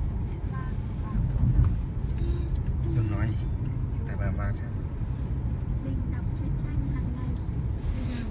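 A car driving, heard from inside the cabin: a steady low road and engine rumble, slightly louder about a second and a half in.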